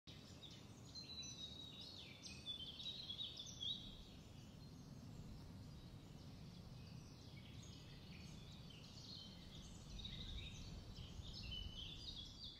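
Faint birdsong: clusters of short chirps and calls, busiest in the first few seconds and again near the end, over a low steady background rumble.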